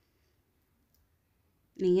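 Near silence, broken only by one faint click about halfway through.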